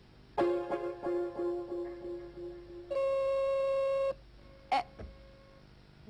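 Electronic quiz-show signal marking the end of the answer time. A loud pitched tone is re-struck about three times a second for a couple of seconds, then a steady buzzer tone holds for just over a second and cuts off. A short sharp sound follows a little later.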